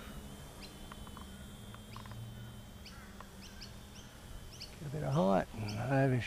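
Small birds chirping in short, repeated high notes, over a faint steady high whine from a distant model aircraft's electric motor.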